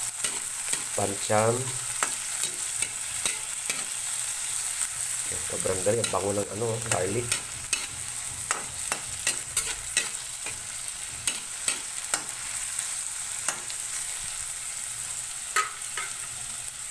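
Chopped onion, garlic and tomato sizzling in oil in a steel wok, with a steady hiss. A metal spatula stirs them, clicking and scraping against the pan at irregular moments.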